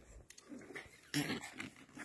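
A small puppy gives one short play growl about a second in while mouthing a person's finger, with faint rustling around it.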